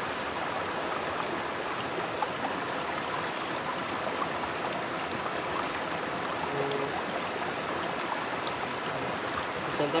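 Shallow stream running steadily over rocks.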